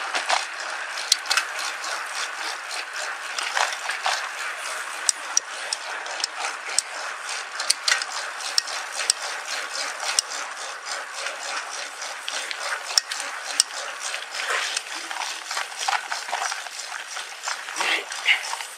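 Mountain bike rolling along at speed: a steady rush of tyre and riding noise, broken by frequent sharp clicks and rattles from the bike.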